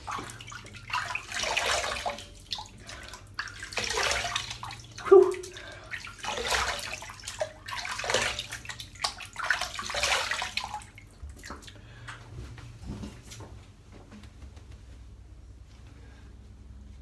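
Water splashing in about five separate bursts as a face is rinsed with tap water after a wet shave. The splashing dies away about two-thirds of the way through.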